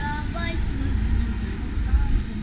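Outdoor street ambience: a steady low rumble throughout, with a faint high-pitched voice briefly near the start.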